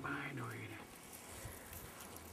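A man's voice trailing off on a last word in about the first second, then faint outdoor background with a low steady hum.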